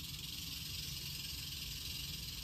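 Eastern diamondback rattlesnake (Crotalus adamanteus) rattling its tail: a steady, unbroken high buzz, the warning sound of a coiled, defensive rattlesnake.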